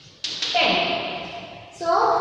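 Two sharp taps of chalk on a chalkboard, close together, as the writing is finished, followed by a voice; a woman starts speaking near the end.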